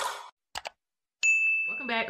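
Two quick mouse-style clicks followed by a clear, high bell-like ding held for well under a second: the click-and-chime sound effect of an animated subscribe button.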